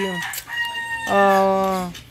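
A rooster crowing in one long, slightly falling call, with a man's drawn-out hesitation sound overlapping its second half.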